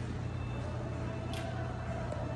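A steady low hum under a faint hiss, with a light click about one and a half seconds in.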